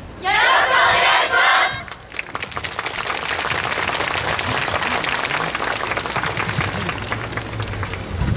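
A group of dancers shouting in unison for about a second and a half, followed by a steady patter of audience applause.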